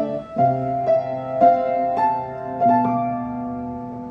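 Solo piano playing a slow, lyrical ballad melody in F major over sustained chords, a new note or chord about every half second. A chord is struck near the end and left to ring and fade.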